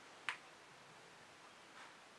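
A single sharp, light click about a third of a second in, as a wooden skewer taps against the canvas, then a much fainter soft scrape near the end over quiet room tone.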